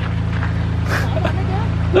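A car engine idling with a steady low hum, with faint voices over it and a brief noise about a second in.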